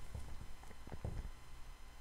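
A few faint, irregular light taps in the first second or so, over a low steady hum.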